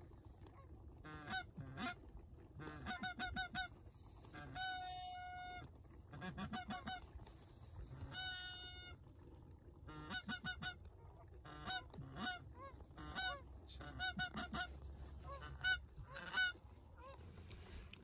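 A flock of geese honking, many short honks in quick clusters, with a couple of longer, steadier calls about five and eight and a half seconds in.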